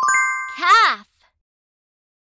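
Bright game chime of several ringing tones, struck once and dying away over about half a second, marking a correct match in a children's matching game. It is followed by a short, voice-like sound whose pitch rises and then falls.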